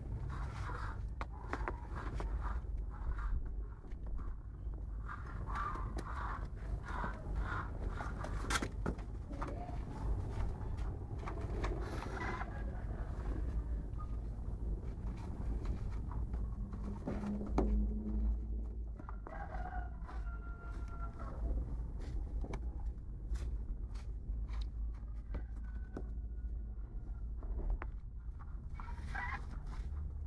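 Domestic goose calling in short repeated honks, with scattered sharp knocks and a steady low rumble underneath.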